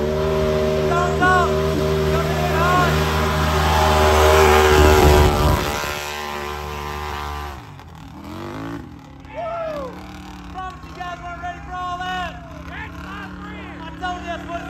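Mud-racing ATV engine held at high revs, one steady loud drone, with short whoops over it; it drops away about seven and a half seconds in. After that, spectators yell and whoop over a quieter engine.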